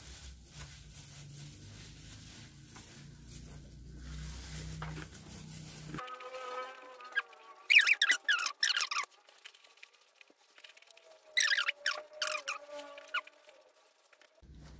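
Faint room noise, then from about six seconds in several quick runs of high-pitched squeaks and chirps.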